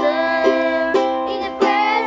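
Ukulele strummed in a steady rhythm, about two strokes a second, with a woman and children singing a held, wavering melody over it.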